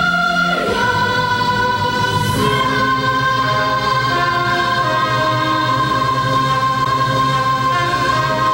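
Children's choir singing long held notes, the notes changing about half a second in and again a couple of seconds later.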